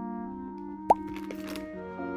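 Light, cute background music with steady held notes. About halfway through, a single short rising plop, the loudest sound.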